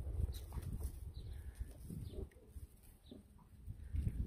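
Faint goat-pen sounds: a few short, quiet goat calls over a low rumble.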